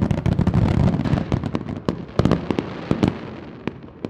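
Fireworks going off: a rapid string of sharp crackling pops over a low rumble. The pops thin out and the sound fades over the last second or so.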